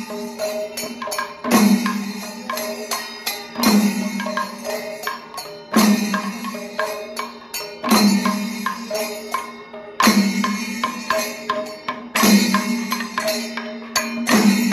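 Maddalappattu: an ensemble of maddalam, Kerala barrel drums, playing in a slow cycle. A deep resonant stroke falls about every two seconds, with quicker, lighter strokes between.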